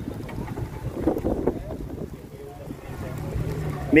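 Wind buffeting the microphone as a low, rough rumble, with faint voices about a second in and a brief low hum near the end.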